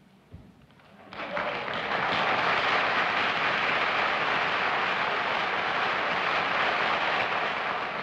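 Studio audience applauding. It starts about a second in, swells over the next second and holds steady.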